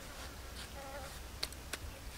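Faint, brief buzz of a flying insect, with two light clicks about a second and a half in as a knife cuts into a tomato.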